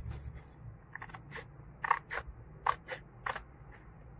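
Small scissors cutting craft paper: a run of short, sharp snips starting about a second in, the loudest about halfway through and near the end.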